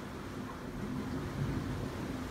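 Steady low rumble of surf and water echoing inside a rocky sea cave.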